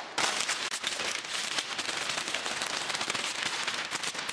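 Thick brown wrapping paper crinkling and rustling as it is pulled open by hand, a dense run of small crackles.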